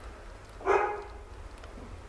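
One short dog call, like a brief bark or yelp, a little over half a second in.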